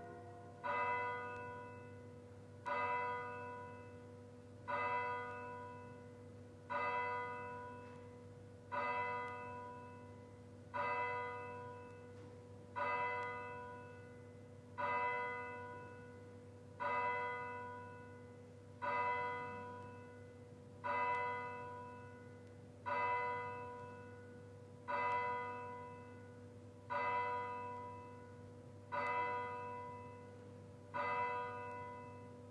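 A single church bell tolling at a slow, even pace, one stroke about every two seconds, each stroke ringing out and fading before the next.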